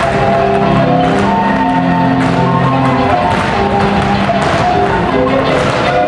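Marimba playing a lively Chiapas son, with rolled, held notes in several voices over a bass line. Sharp taps from the dancers' footwork sound over it a few times in the second half.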